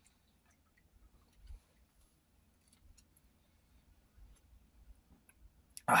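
A man drinking beer from a can: faint gulping and swallowing clicks, ending near the end with a loud, breathy "ah" after the drink.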